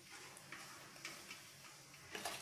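A steel spoon clicking and scraping faintly against a stainless steel bowl as chopped gooseberry pickle is stirred, with a few soft, irregular clicks.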